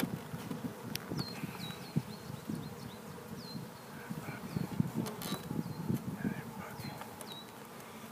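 Honeybees buzzing around an open hive, a wavering hum, with a few sharp knocks as the wooden hive boxes are set back in place.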